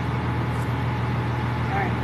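Steady low engine hum and road noise of a moving tour vehicle, heard from inside among the passengers.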